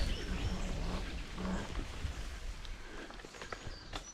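Homemade electric bike ridden off-road through long grass: a rough rumble of wind and jolting over uneven ground, with a low hum in the first second and a half. It eases off over the last couple of seconds, with a few sharp clicks and knocks.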